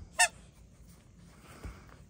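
A purple KONG dog toy's squeaker gives one short, sharp squeak about a quarter second in, as the toy is pulled between hand and dog's mouth. A faint low thump follows near the end.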